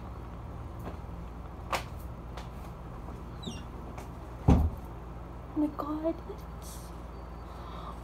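Steady low hum with a few light clicks and one loud thump about halfway through.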